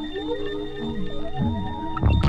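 Opening of a 1989 techno track before the drums: held synthesizer notes with electronic sounds sliding up and down in pitch, and no beat yet.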